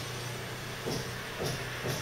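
Steady low background hum with faint soft pulses about twice a second.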